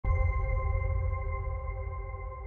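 Intro sound effect: a sustained electronic tone, several steady pitches at once over a deep rumble, starting abruptly and slowly fading.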